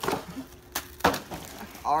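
Cardboard-and-foil Pop-Tart packaging being torn open by hand, with one sharp snap about a second in.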